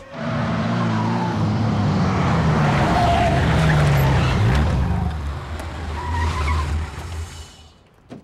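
Ferrari 360 Modena's V8 running loud as the car drives in, with tyres squealing as it slides to a stop. The engine note dips about halfway through and fades out near the end.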